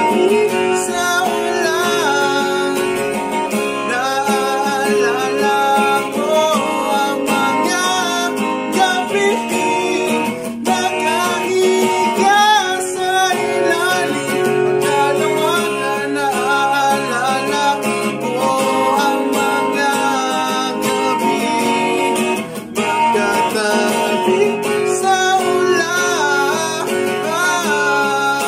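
A man singing while strumming an acoustic guitar, his voice gliding over steady strummed chords.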